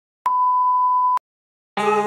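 A single steady high test-tone beep, the kind played with colour bars, lasting about a second and starting and stopping with a click. After a short silence, guitar music starts near the end.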